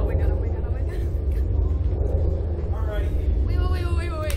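Young girls' voices murmuring briefly, mostly near the end, over a steady low rumble.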